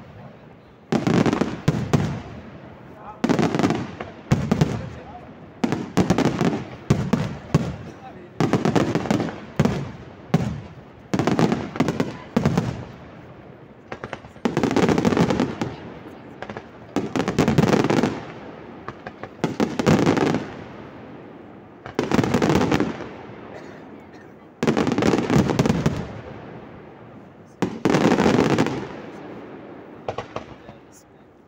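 Aerial firework shells bursting overhead in a steady series, one volley every two to two and a half seconds, each a quick cluster of bangs and crackle that fades over about a second.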